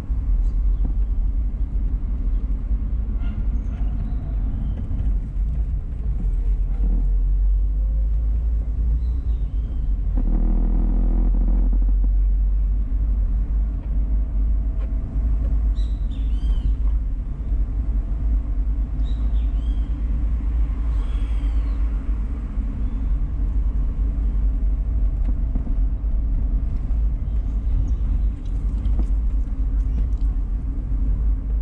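Car driving along a street, heard from inside the cabin, with a steady low rumble of engine and road. It grows louder and buzzier for a couple of seconds about a third of the way in. A few short high chirps come later.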